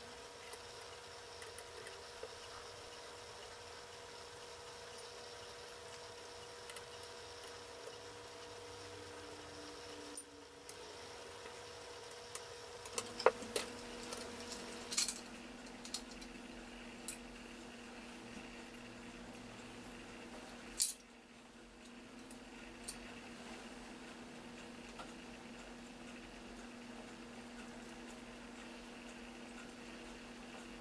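Small brass parts of an anniversary clock movement clicking and clinking as it is taken apart by hand, with a cluster of sharp clicks about halfway through and one louder knock a few seconds later, over a faint steady hum.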